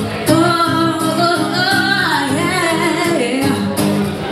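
A woman singing into a microphone with acoustic guitar accompaniment. She holds one long sung phrase whose pitch slides up and down, starting a moment in and ending just before the close, while the guitar strums lightly underneath.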